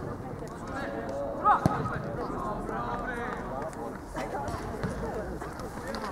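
Voices calling out across an outdoor football pitch during play, with a loud call and a sharp knock about a second and a half in.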